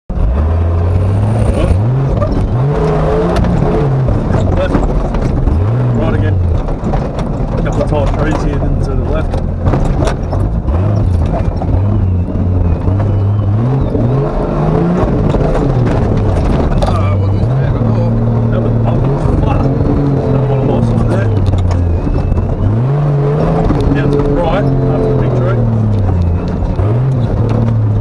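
Turbocharged Nissan GQ Patrol's TB42 straight-six petrol engine revving up and dropping back again and again as the truck is driven over a rough dirt track, with frequent knocks and rattles from the body.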